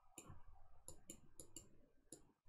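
Near silence with faint, light, irregular clicks, about six in two seconds, from the handling of the pen or pointer used to draw marks on the slide.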